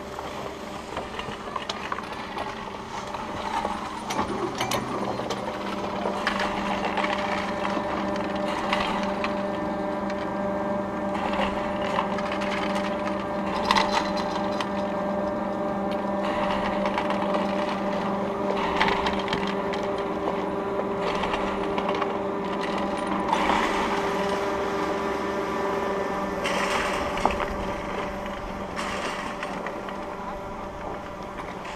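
Platter ski lift, a 1967 Städeli (WSO) surface tow, running while a skier rides it uphill: a steady mechanical hum with several tones, skis sliding over the snow, and a few short knocks. It grows louder about four seconds in.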